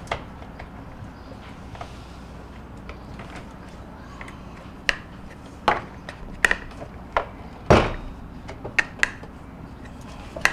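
Refrigerator's plastic toe panel being pulled off and handled: a run of sharp plastic clicks and knocks in the second half, the loudest a single thump about three-quarters of the way through.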